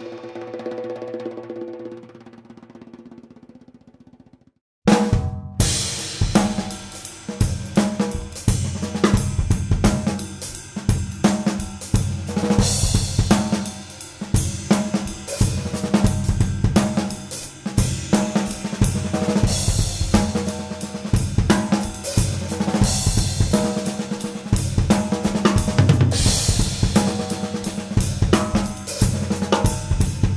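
A single ringing hit fades out over about four seconds. After a short gap, about five seconds in, a drum kit starts playing a busy groove with snare, bass drum, toms, hi-hat and cymbal crashes.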